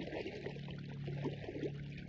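Water bubbling in quick, irregular burbles, as from air bubbles rising underwater, over a low steady hum.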